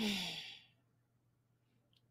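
One breathy sigh from a person, its voice falling in pitch and fading out within about half a second.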